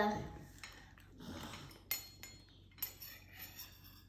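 A few faint, short clinks of tableware handled on a table, with one sharper click about two seconds in and another near three seconds.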